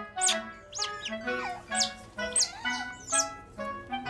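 Background music, with an otter pup's repeated high squeaks that fall quickly in pitch, about once or twice a second.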